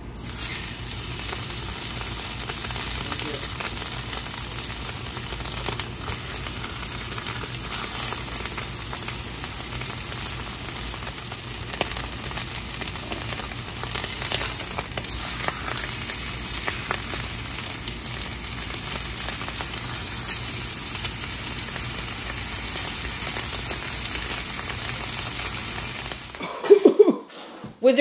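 Ribeye steaks searing in hot bacon grease in an enameled cast-iron skillet: a loud, steady sizzle that starts as the meat goes into the pan and stops suddenly near the end.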